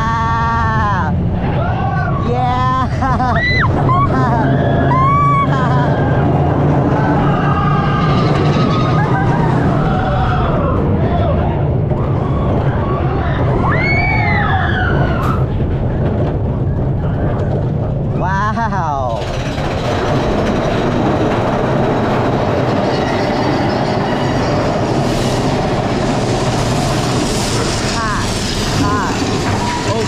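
Big Thunder Mountain Railroad mine-train roller coaster running fast on its track with a steady low rumble, riders whooping and screaming over it in the first half. From about two-thirds of the way in, rushing wind on the microphone takes over.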